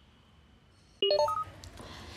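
A quick rising run of short electronic beeps about a second in, after near silence.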